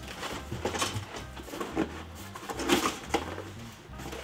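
Cardboard packaging being handled: a small parts box holding the smoker's legs and hardware is pulled from its shipping carton, with irregular rustles, scrapes and knocks, loudest a little under three seconds in.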